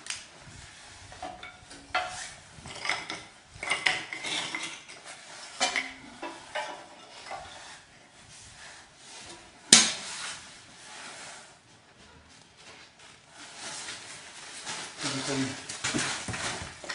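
Firewood and kindling knocking and scraping against a small metal wood stove as it is loaded, a scatter of irregular clatters with one sharp bang about ten seconds in.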